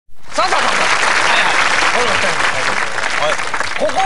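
Audience applause, a dense steady clapping with a few voices faintly over it, thinning out near the end as talk takes over.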